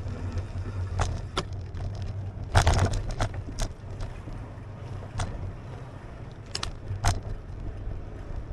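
A bicycle rolling along pavement, heard from a camera mounted on it: a steady low rumble of wind and tyres, with sharp rattles each time it goes over cracks and concrete slab joints. The loudest clatter comes about three seconds in, as it moves from the street onto the concrete alley.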